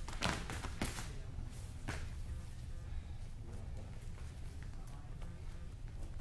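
A few soft thuds and slaps of wrestlers' feet and bodies on a wrestling mat during a takedown drill: two close together near the start and one about two seconds in, over a low steady room hum.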